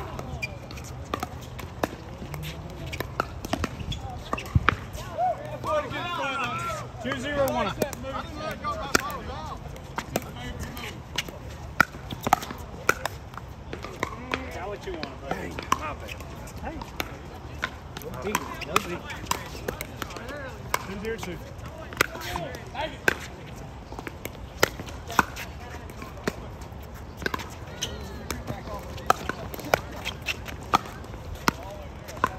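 Pickleball paddles hitting a perforated plastic ball: sharp pops scattered throughout, from this court and the neighbouring courts. Voices can be heard in the background, most clearly between about 6 and 9 seconds in.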